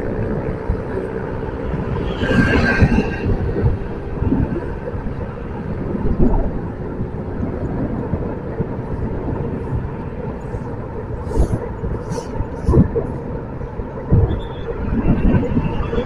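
Low, uneven rumble of a vehicle travelling along a city road, engine and road noise mixed with wind buffeting the microphone.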